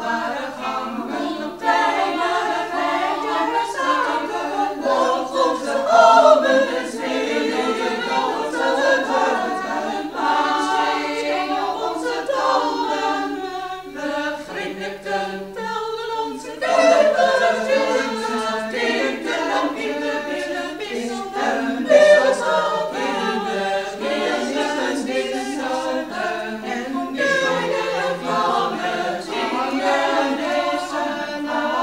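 Women's choir singing a sustained choral passage, with a quieter stretch midway through.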